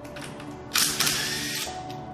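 Makita cordless impact wrench on a race car's wheel nut, firing one short burst of rapid hammering about three-quarters of a second in that lasts under a second.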